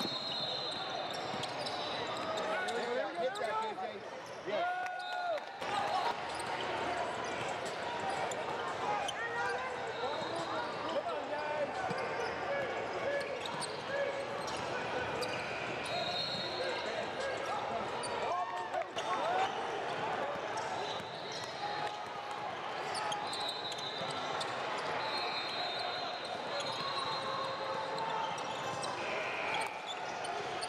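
Basketball game in a gym: a ball dribbling on the hardwood floor and sneakers squeaking, under a steady din of players' and spectators' voices echoing in the hall.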